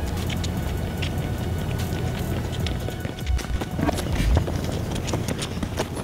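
Many boots striking pavement as a group of Marines runs past, over background music. Around three to four seconds in, a few louder low thumps stand out.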